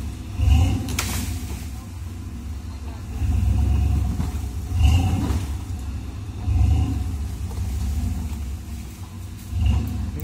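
Rock crawler's engine revving in repeated surges, swelling and easing every couple of seconds as the truck crawls and turns over rocks. A sharp knock comes about a second in.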